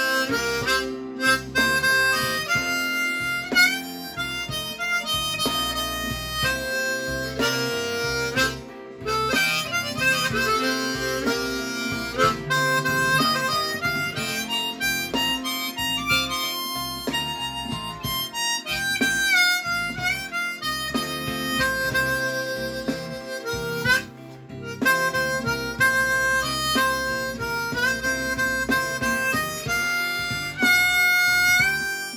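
B-flat diatonic harmonica played in third position, a blues line in C of separate pitched notes with some bent, wavering ones and a couple of brief pauses, over a guitar blues backing track.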